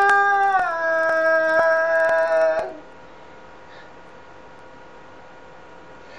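A lone voice singing unaccompanied, holding one long note that steps down in pitch and stops about halfway through, leaving only faint background hiss.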